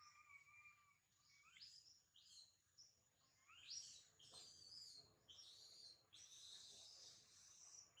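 Faint high-pitched chirping calls: a held whistle-like note in the first second, then a series of quick rising chirps that come longer and closer together over the last few seconds.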